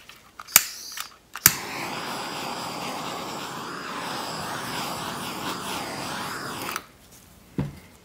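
Handheld butane torch: two sharp clicks of the igniter, then a steady hiss of flame for about five seconds that cuts off abruptly, as the torch is passed over wet acrylic pour paint to pop air bubbles. One more knock near the end.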